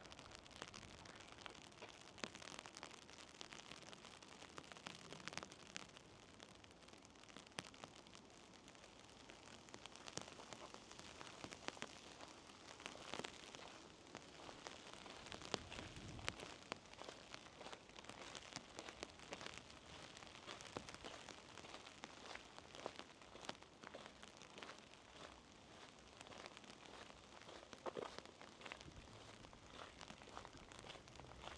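Faint patter of light rain, a soft hiss scattered with irregular small ticks of drops.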